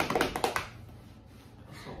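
Hands drumming out a quick drum roll, a rapid run of taps that ends about half a second in, followed by quiet room sound.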